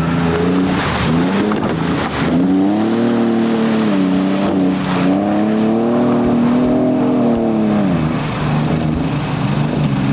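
Off-road 4x4 engine revving hard as it drives through thick mud, its pitch rising and falling several times as the throttle is worked.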